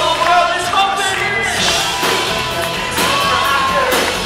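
Live pop-rock band playing with a singer's voice over it, the melody holding one long note in the second half, recorded from the audience in a hall.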